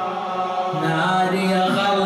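A man's voice chanting a mourning elegy into a microphone, in long held notes whose pitch dips and rises slowly.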